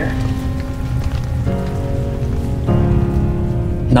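Steady rain-like noise with a deep rumble under soft background music of sustained chords. The chords shift about one and a half seconds in and again near three seconds.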